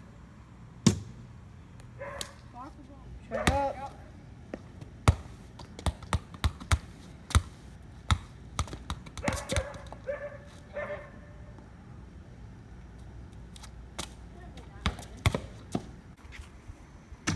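A soccer ball being dribbled by hand on a concrete driveway: an irregular run of sharp bounces, some quick and close together, others spaced a second or more apart.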